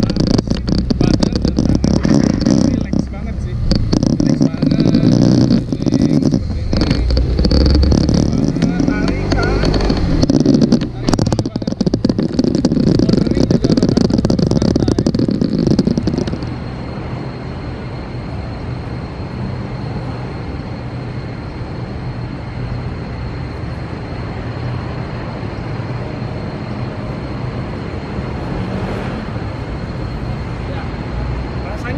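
Faulty, distorted recording from a camera microphone on a moving scooter: heavy wind buffeting and crackling rumble with a voice buried in it. About halfway through it drops suddenly to a quieter steady hiss with a thin high whine.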